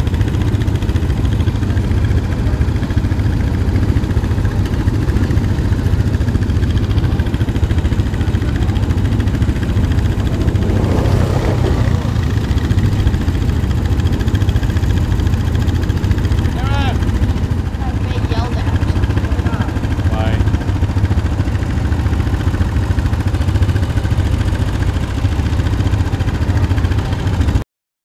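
ATV engine running steadily while being ridden along a dirt trail, with wind rumbling heavily on the microphone. A few brief distant shouts come partway through, and the sound cuts off abruptly just before the end.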